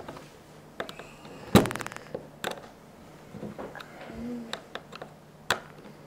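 Small screwdriver driving screws into a plastic transformer housing: scattered clicks and scrapes of metal on plastic, with one louder rattling knock about one and a half seconds in.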